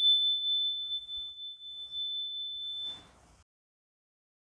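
A handheld metal chime bar mounted on a wooden holder, struck with a mallet just before, ringing one pure high tone that slowly fades and dies out about three seconds in.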